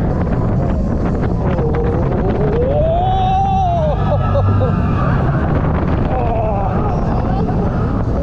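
Launched roller coaster train running at speed through the track, a loud steady rumble with wind buffeting the microphone. A voice glides up and down in pitch over it about three seconds in and again near the end.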